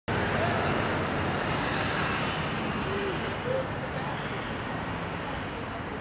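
Steady outdoor traffic and vehicle noise, an even rumble and hiss, with faint voices of people talking.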